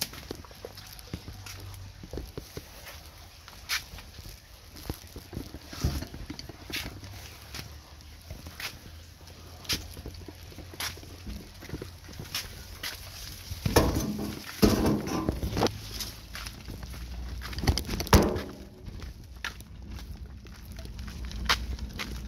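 A loaded wheelbarrow being pushed along, its wheel and metal frame rattling with irregular clicks and knocks, with footsteps. There are a few louder bumps about two-thirds of the way through.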